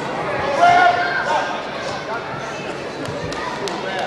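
Spectators' voices and shouts echoing in a large hall during a full-contact karate bout, loudest about a second in. A few short sharp knocks near the end.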